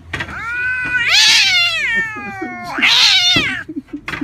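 16-year-old calico cat yowling twice in hostility: a long drawn-out call that falls in pitch, then a shorter one, both harsh at their loudest.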